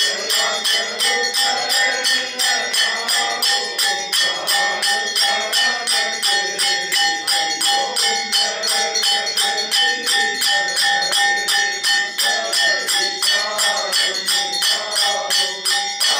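Temple bells rung in a fast, even rhythm of about three strikes a second for aarti, with ringing overtones and devotional music beneath.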